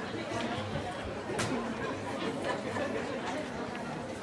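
Many people chattering at once, a hum of overlapping voices with no single clear speaker and no handpans being played. A single sharp click comes about one and a half seconds in.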